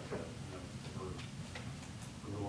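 Faint, unevenly spaced ticks and clicks over a low steady hum, with soft murmuring voices.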